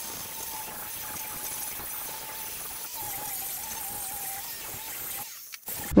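Angle grinder grinding back fresh welds on a steel heater Y-pipe: a steady hiss with a faint wavering motor tone, cutting off near the end.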